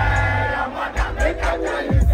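Loud live concert music over a PA, with a heavy bass hit about once a second, and a crowd shouting and singing along.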